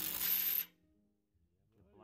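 A cordless power driver runs on a sway bar end link nut for a moment and cuts off suddenly well under a second in. Near silence follows, with a faint voice near the end.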